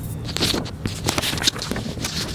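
A crayon scribbling on a colouring book page close to the microphone: quick, irregular scratchy strokes, over a steady low hum.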